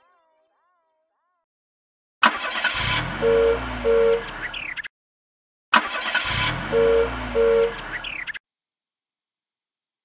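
A cartoon car sound effect plays twice. Each time an engine starts and revs up and back down, with two short horn beeps in the middle. The first run begins about two seconds in and the second follows about a second after the first ends.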